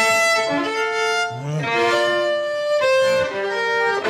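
Solo violin played slowly with the bow, sustained notes changing every half-second or so, often two or more sounding together as chords.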